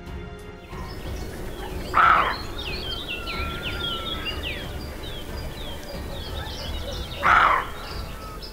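Birds singing in the background with many short chirps, broken twice by a short, loud, harsh bark, about two seconds in and again about five seconds later: a roe deer's alarm bark.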